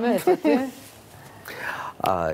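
Speech: a woman talking for under a second, then a pause and a soft, breathy whispered sound near the end.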